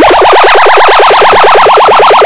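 A short vocal sample (the word "Mike") stutter-looped very fast, about a dozen repeats a second, so it merges into a buzzing pitched drone. It is extremely loud and distorted, as a deliberate ear-splitting edit.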